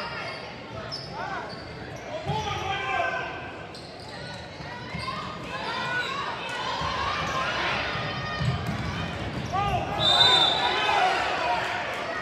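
Basketball game on a hardwood gym floor: the ball dribbling and many short sneaker squeaks as players cut and run, over spectators' voices in a large hall.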